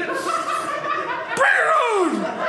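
Laughter following a stand-up punchline, with one voice's laugh sliding down in pitch near the end.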